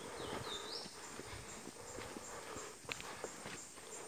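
Soft, uneven footsteps on a dirt and leaf-litter forest trail. A short whistled bird call glides up near the start, and a faint high chirp repeats about three times a second.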